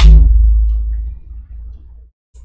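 A loud thump right at the start, with a low boom that fades away over about a second and a half.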